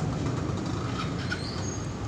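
Steady low background rumble.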